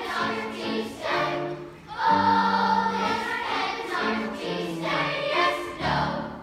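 A large mixed choir singing a slow Christmas song in sustained phrases, with a long held chord about two seconds in. The singing closes on a final held note near the end.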